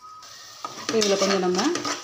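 A metal spatula stirs and scrapes a thick masala paste frying in oil in an aluminium pressure cooker, with a light sizzle. About two-thirds of a second in, a drawn-out voice sounds over it and lasts about a second.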